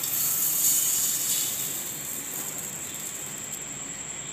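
Grated coconut poured from a plate into a stainless steel mixer-grinder jar: a soft, hissing rustle that fades over the seconds.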